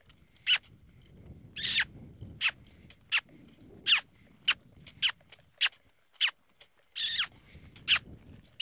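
A trainer's repeated kissing sounds ("smooching"), the cue that drives a horse forward and asks it to move up a gait: about a dozen short, sharp squeaks, one every half-second or so, two of them longer and falling in pitch.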